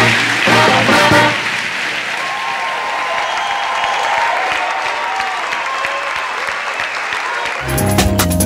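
Live band music that stops about a second and a half in, giving way to a theatre audience applauding; new music with a heavy bass beat starts just before the end.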